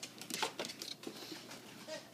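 A small dog making a few short, faint whiny sounds while the dogs scuffle about on a wooden floor.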